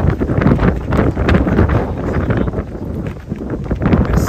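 Wind buffeting the microphone: a heavy, uneven rumble with gusty flutter.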